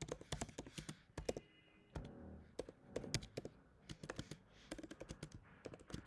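Typing on a computer keyboard: a quick, irregular run of faint key clicks as a line of code is entered.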